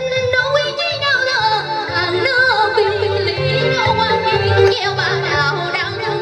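A woman singing a Hồ Quảng opera melody into a microphone, her voice wavering with strong vibrato and ornaments, over instrumental accompaniment with a repeating low bass pattern.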